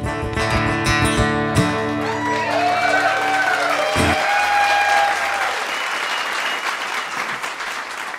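Acoustic guitar's closing chord ringing out, then stopped with a thump about four seconds in, as a small audience applauds and cheers; the applause fades toward the end.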